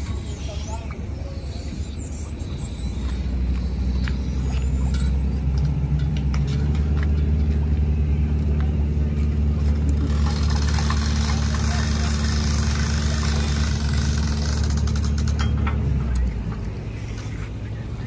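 A motor vehicle's engine running steadily, a low hum that grows louder a few seconds in and drops away near the end, with a hiss over it for a few seconds in the middle.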